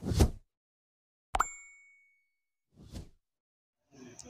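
Music dies away at the start. About a second and a half in, a subscribe-button animation sound effect plays: one sharp click with a short, bright ringing ding. Near the end comes a brief soft whoosh.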